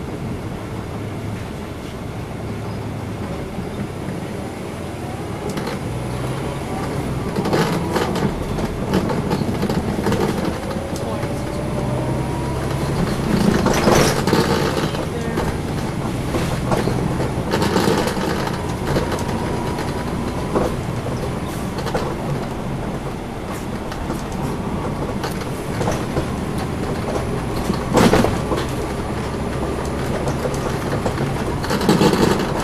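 Inside a 2010 NABI 416.15 transit bus under way: its Cummins ISL9 straight-six diesel engine runs with a steady hum over road rumble. A faint whine rises twice as the bus picks up speed. Sharp knocks and rattles come from bumps in the road, the loudest near the end.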